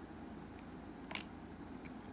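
Quiet room tone with a single short click about a second in and a fainter tick near the end.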